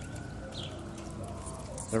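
A dove cooing softly in the yard's background, with one short high bird chirp about a quarter of the way in. The man's voice comes back at the very end.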